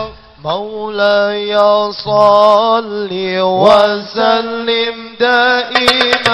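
A man sings a sholawat, an Islamic devotional song, into a microphone in long, drawn-out notes that slide between pitches, over a steady held tone. Percussion strikes come back in right at the end.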